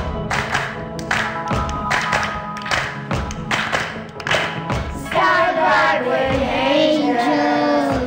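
Children's choir singing a Christmas song over a recorded accompaniment track: the first five seconds are the track's intro with a steady beat of about two strikes a second, then the children's voices come in.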